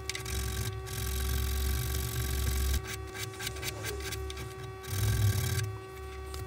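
Hand tool scraping against the wooden heel of an acoustic guitar neck: a long stretch of scraping about a second in and a shorter one near the end, with a few light clicks in between.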